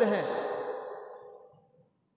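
A man's voice ends a word and trails off into a long, breathy sigh that fades away over about a second and a half, followed by quiet.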